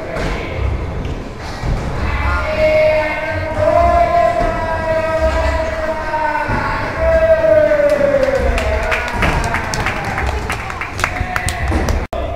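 A skateboard rolling and landing with thuds on indoor wooden ramps. Over the middle, a long held note sags in pitch at its end. A quick run of sharp clacks follows near the end.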